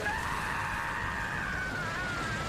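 A long high-pitched scream, held steady and slowly falling in pitch.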